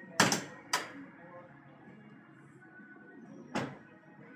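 Three sharp thuds, two in quick succession near the start, the first the loudest, and a third near the end, over faint background music and voices.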